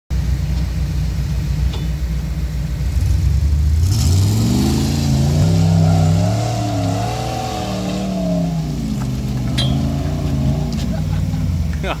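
Engine of a lifted, roll-caged off-road rock-crawler pickup, running low at first, then revving up about four seconds in and held high, its pitch rising and falling as it climbs a steep, rocky hill under load. A laugh comes near the end.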